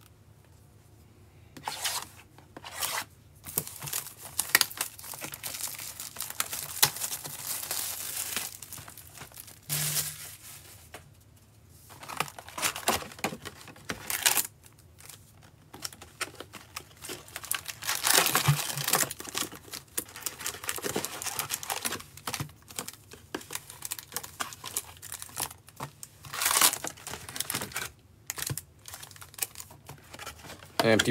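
Plastic shrink-wrap being torn off a cardboard hobby box of trading cards and crumpled, followed by the box lid being opened and foil card packs being pulled out. The crinkling and rustling comes in irregular bursts with short pauses.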